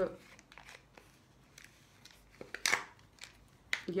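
Faint handling noises at a table, with one sharp click about two and a half seconds in and another short sound just before speech resumes.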